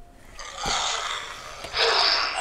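Dinosaur sound effect played through the small speaker of a SayPen talking pen touched to a picture book: a breathy, unpitched noise that grows louder near the end. A light tap sounds partway through.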